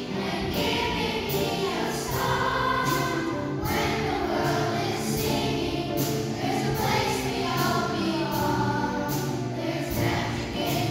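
Children's choir singing together over an accompaniment with a steady beat.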